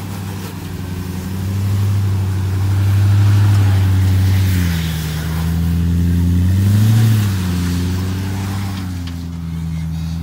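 Lifted Jeep Grand Cherokee's engine running at low revs under load as it crawls over rock ledges. Its pitch drops about four and a half seconds in and swells briefly around seven seconds as throttle is applied, then settles.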